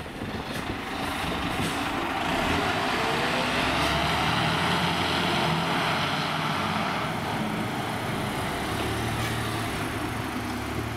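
Diesel engine of a fire brigade aerial platform truck driving past and moving off down the street, with a brief rise in engine pitch about three and a half seconds in.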